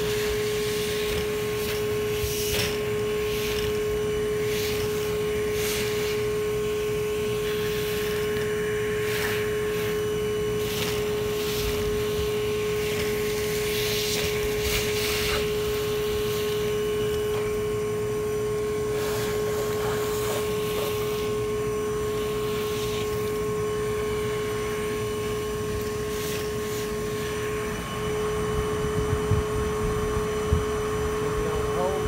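Cordless bee vacuum (Everything Bee Vac) running steadily with a constant one-pitch motor hum while its hose sucks honey bees off a metal grille. Brief louder rushes of noise come now and then as the nozzle takes in bees.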